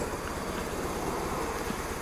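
1997 BMW R1100RT's oil-cooled boxer twin running steadily at cruising speed in fifth gear on light throttle, under a steady rush of riding wind.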